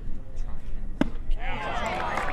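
A baseball pitch popping sharply into the catcher's leather mitt about a second in. Right after, many voices call out and cheer.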